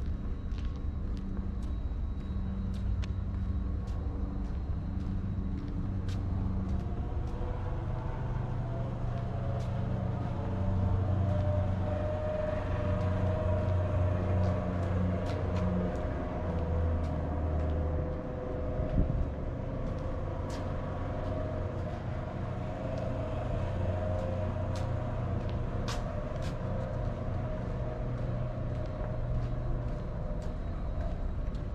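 A steady low mechanical hum with a droning tone, growing louder for a few seconds in the middle, with scattered faint clicks and a short thump about 19 seconds in.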